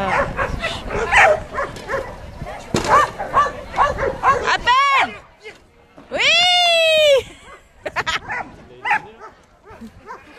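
A dog barking repeatedly in quick, short barks, followed by two longer high-pitched calls that rise and fall, the second about a second long and the loudest.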